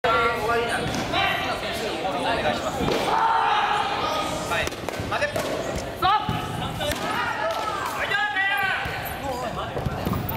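Busy gymnasium with many voices talking and calling out, under repeated thuds and knocks on the wooden floor. A sharp, loud knock comes about six seconds in.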